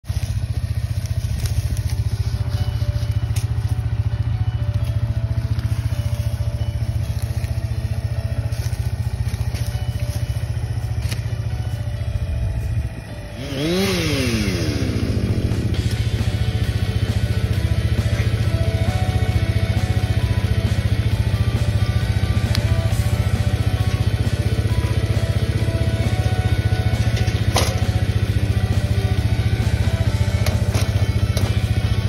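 Gas chainsaw on an Alaskan-style chainsaw mill running steadily at high revs as it cuts a slab along a log, with a brief drop in sound about thirteen seconds in.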